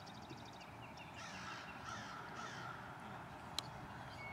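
Crow cawing three times in quick succession, harsh calls about half a second apart. Another bird's rapid trill sounds at the start, and a single sharp click comes near the end.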